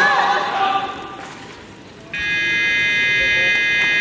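Shouts of encouragement as the lifter drives the barbell overhead, fading within about a second; then, about two seconds in, a steady electronic buzzer sounds and holds: the referees' down signal, telling the lifter the jerk is judged good and she may lower the bar.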